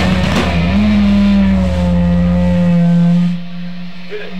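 A rock band's final held chord: electric guitars and bass ring out after a last few drum and cymbal hits. The low bass note stops about two and a half seconds in, and the sound drops off sharply soon after, leaving the guitar ringing more quietly.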